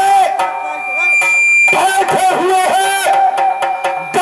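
A man's high voice singing in a declaiming style through the stage PA, in long held notes that waver in pitch, breaking off for about a second near the start while steady drone tones carry on underneath.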